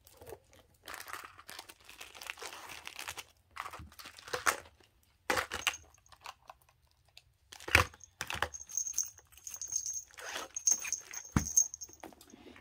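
Crinkling and rustling of a translucent plastic zip pouch and the small toiletries being handled in it, broken by a few sharp knocks as items are set down.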